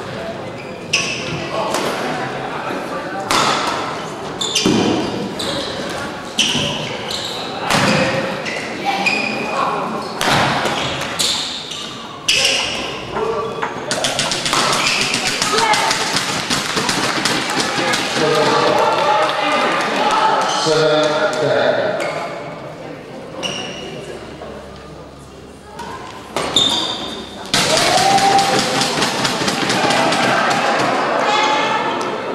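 Badminton rally in a large hall: a quick string of sharp racket strikes on the shuttlecock for the first dozen seconds or so. Then spectators applaud and shout for several seconds, and a second burst of applause comes near the end.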